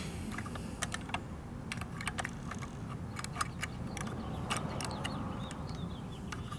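Light, irregular clicks and taps from a small plastic toy garbage cart being handled and set down by hand behind a 1:34 scale model garbage truck, over a steady low background noise.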